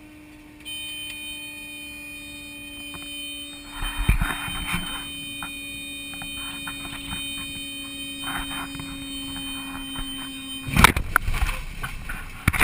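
Cabin sound of a Cessna Grand Caravan gliding down toward the sea after losing engine power: a steady hum with a high whine, broken by two brief rushes of noise, then a sudden loud crash about eleven seconds in as the plane hits the water in an emergency ditching.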